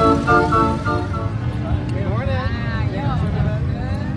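Organ music that fades out in the first second, giving way to street sound: a low steady rumble, with a person's voice calling out in a rising and falling pitch for about a second in the middle.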